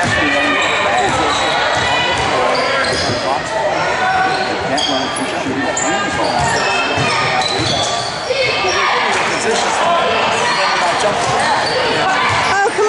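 Basketball game in a gymnasium: a ball being dribbled on the hardwood court, with overlapping voices from spectators and players throughout.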